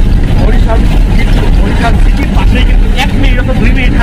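Loud, steady low rumble of a bus's engine and road noise heard from inside the cabin, with voices over it.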